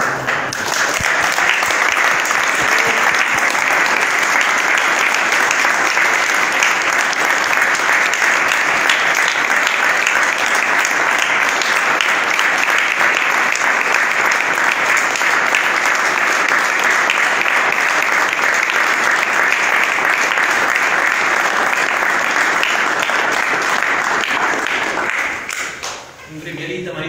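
A small group of people clapping their hands together in steady applause that starts suddenly and dies away near the end.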